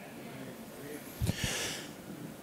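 A man's quick intake of breath close to a handheld microphone, about a second in, with low pops as the air hits the mic.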